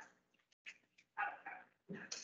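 A few faint, short animal calls in quick succession, one near the start and a cluster about a second in.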